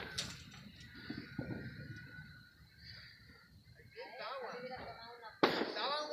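Aerial fireworks heard at a distance: a few quiet seconds, then a sharp firework bang about five and a half seconds in, with people's voices around it.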